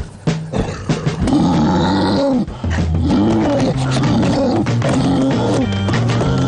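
Repeated roaring, wavering animal calls from a cartoon sound track, rising and falling about every half second, with a few knocks before them in the first second. Background music plays under them.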